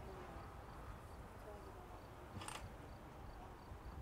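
Quiet outdoor background with a low rumble and a faint high tick repeating evenly about two or three times a second. One sharp click sounds about two and a half seconds in.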